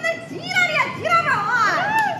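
Two women laughing and squealing in high voices, their pitch sliding up and down.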